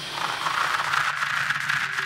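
Radio-static sound effect: a steady hiss with fine crackle, like a receiver between stations, with a faint low hum underneath.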